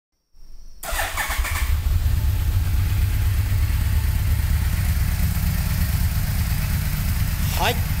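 A 2000 Yamaha V-Max 1200's 1198 cc V4 engine, with its stock exhaust, starting up within the first second and then idling with a steady low rumble.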